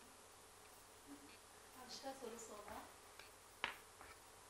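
Near silence in a quiet hall, with a faint voice murmuring about halfway through and a single sharp click near the end.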